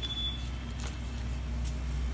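Steady low hum of a shop interior, with a few faint clicks and rustles from a phone being carried through the aisles and a short high beep right at the start.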